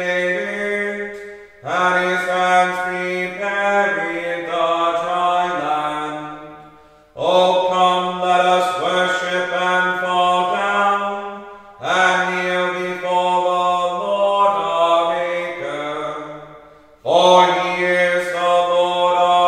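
Liturgical chant in plainsong style: sung phrases of about five seconds, each held mostly on one reciting note and moving through a few notes toward its end, with a short pause for breath between phrases.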